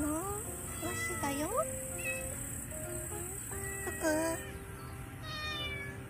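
Domestic cat meowing several times, short calls that slide up and down in pitch, over background music.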